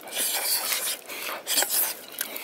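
Noisy eating of mashed purple yam, shovelled from an earthenware bowl into the mouth with a bamboo strip. There are two bursts of scraping and slurping: the first lasts about a second, and the second comes near the end.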